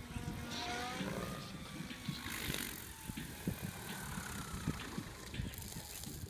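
Mikado Logo 600 SX electric RC helicopter heard faintly as it comes down to land, its motor and rotor whine falling in pitch over the first few seconds, under a steady low rumble.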